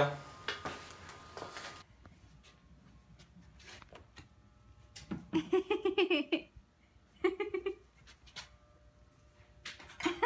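Cordless drill driving a final screw into a wooden gate frame, stopping suddenly about two seconds in. Later come two short, high-pitched vocal sounds.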